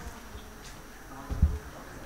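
Quiet meeting-room ambience with a faint murmur, and a single dull, low thump about one and a half seconds in.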